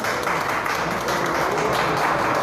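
Spectators applauding after a shot in a sinuca match: a dense spatter of hand claps that starts just before and keeps going.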